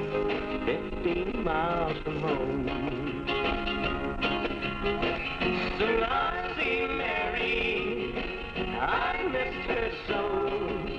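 Instrumental break of a country song from a home reel-to-reel tape recording: a small band plays on while a lead line of bending, wavering notes carries the melody between sung verses.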